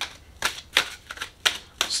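Tarot cards being handled as a card is drawn: about six sharp, irregular clicks and snaps of card stock.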